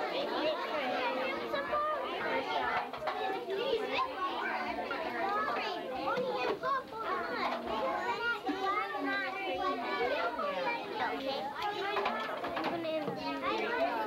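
Many young children talking and calling out at once, a continuous overlapping chatter of high voices with no single speaker standing out.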